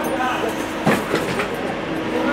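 Steady mechanical drone of machinery running, with a few sharp knocks about a second in and brief voices at the start.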